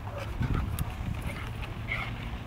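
Two Kangal shepherd dogs play-wrestling: scuffling and animal noises with a couple of short sharp knocks in the first second.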